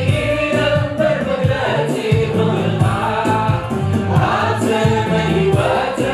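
Church choir and congregation singing a Tigrinya gospel worship song, with steady low instrumental accompaniment and a regular beat.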